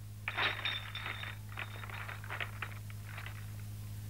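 Glass bottles clinking against one another: a quick, ringing flurry of clinks lasting about a second, then scattered lighter clinks.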